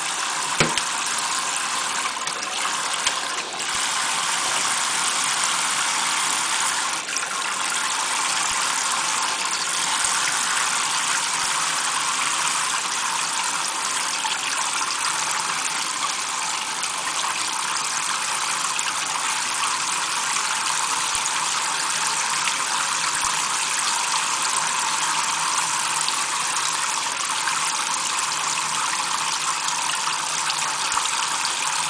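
Kitchen faucet spray running steadily onto a standing parrot and into a stainless steel sink: an even, unbroken hiss of falling and splashing water. A short click sounds about half a second in.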